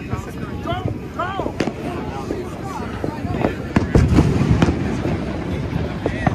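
Distant fireworks popping and banging, with a louder cluster of bangs and crackle about four seconds in.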